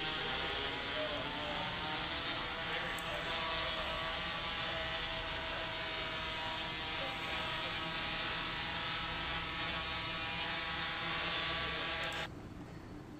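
Quanser Qball quadrotor's propellers running in flight: a steady buzzing hum with many even overtones, sounding muffled with its top end cut off.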